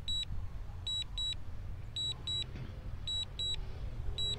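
High-pitched double beeps, one pair about every second, from a DJI Mini 2's return-to-home alert: the signal that the drone is flying itself back to the home point.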